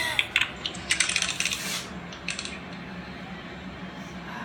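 A woman laughing breathily, mixed with a quick run of small clicks and rattles over the first two seconds. After that only a faint steady hum remains.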